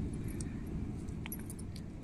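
A few faint, light clinks of stainless-steel bowls and plates over a steady low background rumble.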